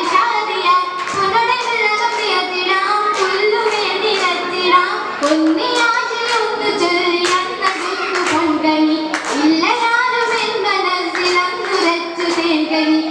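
Young girls' voices singing an Oppana song together, accompanied by the dancers' sharp rhythmic hand claps in time with the song.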